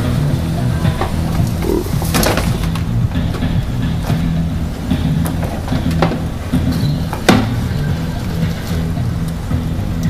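Movie soundtrack of music and effects playing through the mobile theater's amplified speakers and subwoofer, with a steady bass line and a couple of sharp hits, about two seconds in and again near seven seconds.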